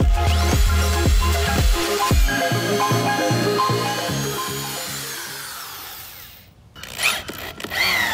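Background dance music with a steady beat fades out over the first six seconds. About seven seconds in, a corded electric drill speeds up and slows down in short runs, pre-drilling through a rubber horse mat into a 4x4 frame.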